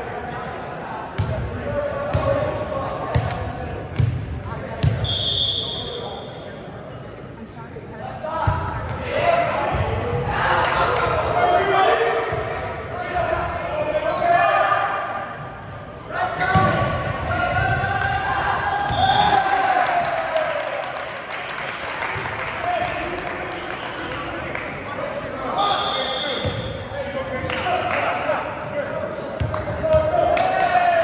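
Volleyball bounced several times on a hardwood gym floor, then a short referee's whistle about five seconds in. Players shout and call during the rally that follows, with ball hits echoing in the gym, and another short whistle blows near the end.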